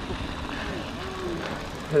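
Steady low rumble of wind on a GoPro microphone and mountain-bike tyres rolling on a gravel road, with faint voices of other riders.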